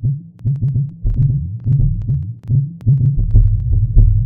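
Sound-designed intro effects: deep, low throbbing pulses, two or three a second and unevenly spaced, with sharp thin clicks over them and a low rumble that builds from about a second in.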